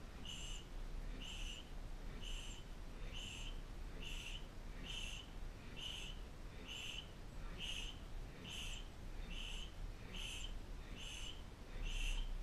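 Short, high electronic beeps repeating at an even pace, a little faster than one a second, like a metronome.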